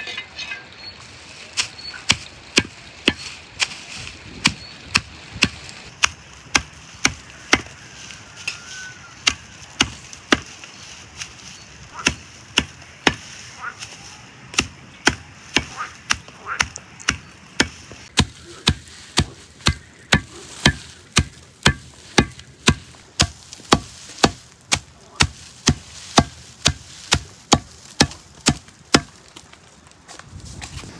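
A blade chopping bundled straw against a wooden stump: sharp, rhythmic chops at about two a second, quickening a little in the second half. The straw is being cut short, as for mixing into clay.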